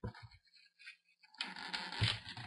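Plastic laptop screen bezel being pried up by hand off its adhesive strip: a few small clicks, then about one and a half seconds in a faint, steady scratchy peeling as the adhesive lets go.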